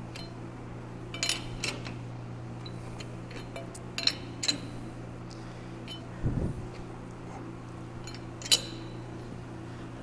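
Sharp metal clinks, about five spread out, of a chuck key working the jaw screws of a lathe's four-jaw chuck, with a dull thump about six seconds in, over a steady low hum.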